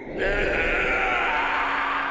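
A drawn-out, strained cry from an animated character's voice on the episode's soundtrack, held for nearly two seconds.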